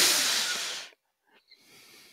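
A man's long breathy exhale close to the microphone, loudest at once and fading out within about a second, then a faint breath near the end.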